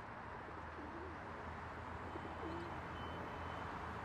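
Pigeons cooing, faint, twice about two seconds apart, over a steady low city hum.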